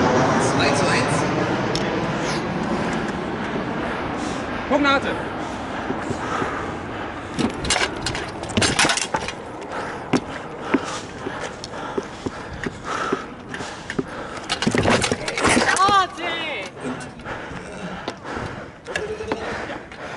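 Practice swords knocking against shields in close sparring, in two flurries of sharp clacks, the second about halfway through the flurry and ending in a double hit. Voices call out around the blows, with a drawn-out cry as the second flurry ends.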